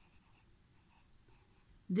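Pencil scratching faintly on a workbook's paper page as a word is handwritten.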